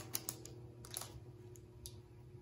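Clear plastic wrap crinkling in a few faint, sharp crackles as a fountain pen is slid out of it.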